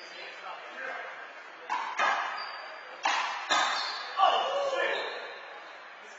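Handball rally: a rubber handball is slapped by hand and hits the front wall, giving four sharp smacks in two close pairs that echo around a large hall. Men's voices follow near the end.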